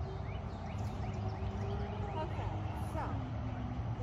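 Outdoor background: a steady low rumble with faint, distant voices and a few short high chirps.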